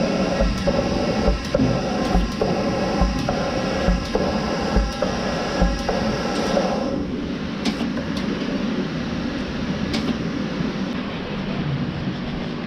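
Lely robotic milking box machinery running: a hum of several steady tones with a regular low thump about once a second. The hum and thumping stop about seven seconds in, followed by a few sharp clicks.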